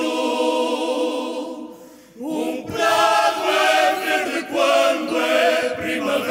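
A fado song sung live in harmony by a female lead and male voices backed by a male choir, holding long sustained notes. The voices fall away briefly about two seconds in, then come back in together on a rising note.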